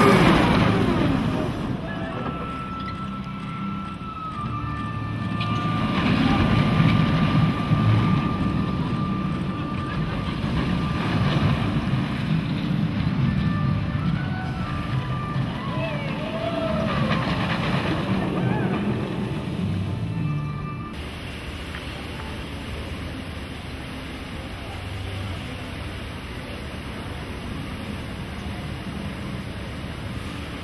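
Intamin steel roller coaster train running on its track: a steady rumble with a high whine held for several seconds, and faint voices of riders. About two-thirds of the way through the sound drops suddenly to a quieter steady haze.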